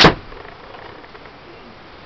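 A single sharp crack of a catapult (slingshot) being shot at full draw, very powerful gamekeeper bands snapping forward to launch a marble, right at the start; then only faint room noise.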